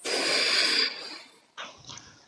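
A person breathing out hard into the microphone: a breathy hiss lasting under a second, then fading, with two faint short breath sounds near the end.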